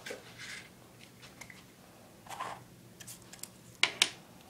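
Faint handling noises: a few soft rustles and taps, with a sharper click just before the end.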